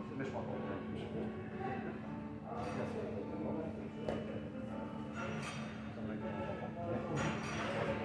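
Gym background: music playing with indistinct voices in a large hall, and occasional soft knocks.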